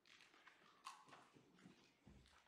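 Near silence: quiet room tone in a church sanctuary, with a few faint clicks and rustles.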